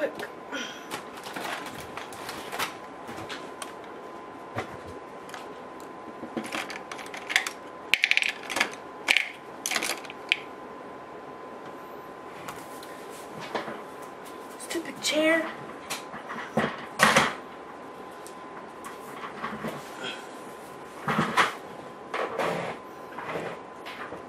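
Someone rummaging through makeup brushes and containers: irregular clicks, clatters and rustles of small objects being picked up, shifted and set down, over a faint steady high whine.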